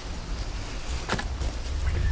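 Low rumble of wind on the microphone with light rustling and a faint knock about a second in, as a hand works in the nesting straw of a wooden nest box under a broody hen.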